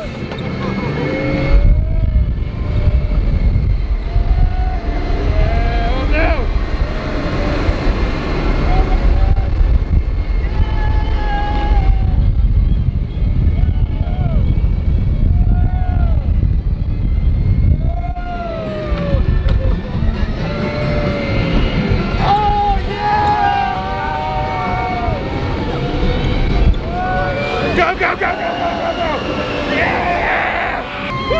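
An open-top Radiator Springs Racers ride car speeding along its outdoor track, with heavy wind and motion rumble on the microphone. Riders whoop and shout briefly over it.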